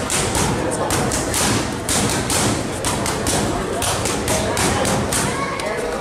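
Boxing gloves striking focus mitts in quick combinations: a rapid, irregular run of sharp smacks, several a second, in clusters. Voices murmur underneath.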